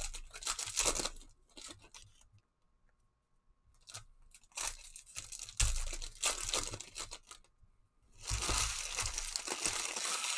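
Foil wrapper of a 2016 Torque NASCAR trading card pack being torn open and crinkled in the hands. The rustling comes in three spells: at the start, again about five seconds in, and a longer, denser spell near the end. There is a short quiet pause a few seconds in.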